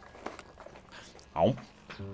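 A man's short spoken "Oh." with a falling pitch about one and a half seconds in; before it only faint background sound.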